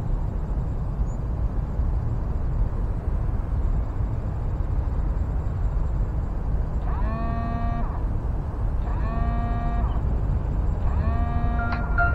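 A steady low rumble with no clear source. About seven seconds in, three identical pitched tones begin, evenly spaced about two seconds apart, as the opening of added music.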